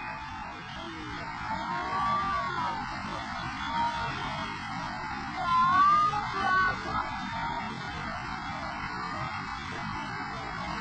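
Steady rush of a fast, swollen river pouring over a drop. Twice, a high wavering voice rises over it, about two seconds in and again around six seconds in, the second time loudest.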